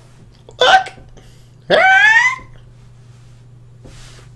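A high-pitched voice in two short outbursts, the second longer and falling in pitch: an anime character's dialogue in Japanese.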